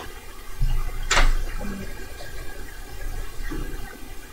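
Hands operating a vintage Webcor reel-to-reel tape recorder: a low thump, then one sharp mechanical click about a second in, over a faint steady hum and rumble from the machine.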